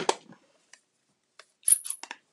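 A few light plastic clicks, then a louder cluster of sharp clicks with a thin high ring near the end: a Stampin' Up classic ink pad's plastic case being handled and its lid flipped open.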